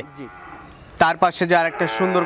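Cattle lowing: a moo, with a man talking over it in the second half.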